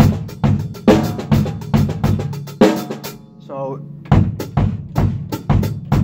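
Drum kit played with sticks, snare, bass drum and cymbal strikes in an even pulse of a little over two strokes a second: quarter-note triplets over 6/8. The playing stops briefly around the middle and picks up again about four seconds in.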